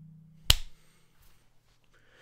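The fading tail of a low ringing note, then a single sharp click about half a second in.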